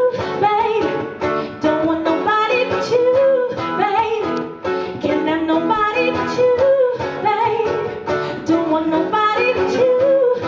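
A woman sings live into a microphone in held and sliding notes, accompanied by a strummed acoustic guitar.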